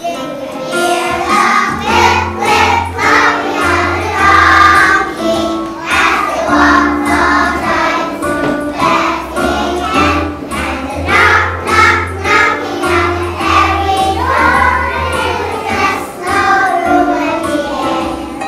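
Children's choir singing a Christmas song over an instrumental accompaniment with a steady bass line.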